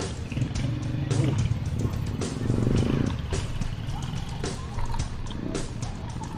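Motorcycle engines of nearby sidecar tricycles running in a busy street, loudest about one to three seconds in, with music playing over them.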